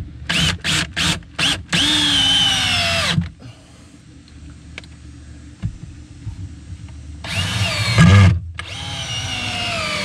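A 20V lithium cordless drill with a star (Torx) bit driving screws into wooden timber. A few short trigger bursts are followed by a long run whose whine drops as the screw sinks in; after a quieter pause of about four seconds come two more runs near the end.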